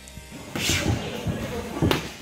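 Sparring in a gym cage: scuffling and a voice over background music, with one sharp thud of a blow or body against the cage just before the end.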